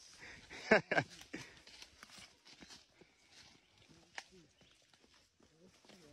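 Footsteps and rustling of people walking through undergrowth on a bush path, with one short, sharp sound just under a second in and faint distant voices later.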